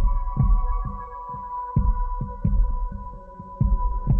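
Intro of a slow soul instrumental backing track: a held chord over low, throbbing drum beats.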